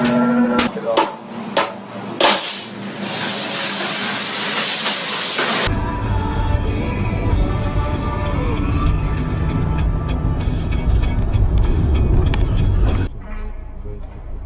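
A steady, loud low rumble of a car on the move, picked up by its dashboard camera, fills most of the second half. Before it come a brief bit of music, a few sharp clicks and several seconds of loud hiss.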